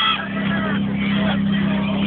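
Portable fire pump engine running at a steady high speed, with spectators shouting and cheering over it.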